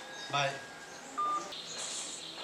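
A single short electronic beep from a mobile phone, a steady tone about a fifth of a second long heard about a second in, right after a spoken "bye": the phone's call-ended tone.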